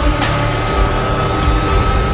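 Indy car engine at high revs as the car passes, mixed under a loud soundtrack music bed.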